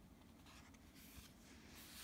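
Faint rustle and slide of paper as the pages of an accordion-folded goshuin stamp book are opened out and smoothed by hand.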